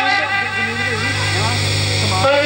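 A loud, steady low drone, engine-like, under wavering pitched tones and sustained music from the stage's playback track.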